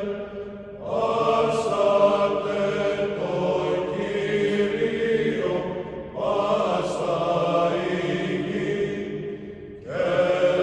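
Orthodox church chant: voices sing long, held notes in slow phrases, with a new phrase starting about a second in and another about six seconds in.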